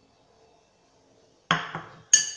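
A single sharp clink of crockery about one and a half seconds in, ringing briefly as it fades: a white serving bowl with a metal spoon in it being set down on the counter.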